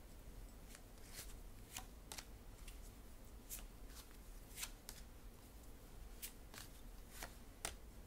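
A tarot deck being shuffled by hand: faint, irregular snaps and swishes of the cards, roughly one every half-second.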